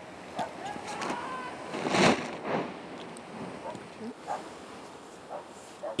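Wind buffeting an outdoor camera microphone, with faint distant voices. About two seconds in comes one louder rush of noise.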